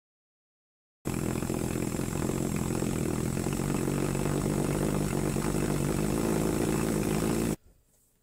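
Homemade copper-pipe pulsejet running on propane, kept going by compressed air from a blow gun: a loud, steady buzz with a rapid flutter. It starts about a second in and stops abruptly near the end.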